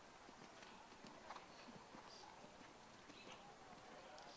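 Faint hoofbeats of a dressage horse moving over sand arena footing.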